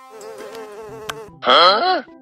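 A housefly buzzing, its pitch wavering up and down, growing louder in the last half second.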